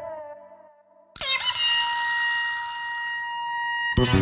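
Edited-in sound effect over a title-card change: the fading tail of a title jingle, a brief gap, then a sudden swoop about a second in that settles into a steady, horn-like held tone.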